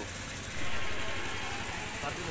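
A motor engine running, swelling about half a second in and then slowly fading.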